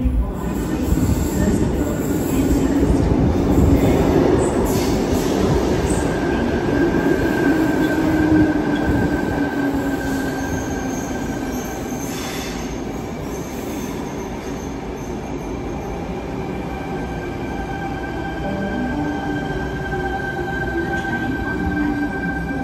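Sydney Trains Tangara double-deck electric train pulling into an underground station platform, echoing off the tiled walls. A heavy rumble of its approach comes first, then steady high-pitched wheel squeal from about six seconds in as it slows toward a stop.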